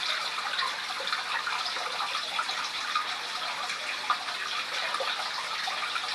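Aquarium water circulating, a steady trickling, splashing hiss.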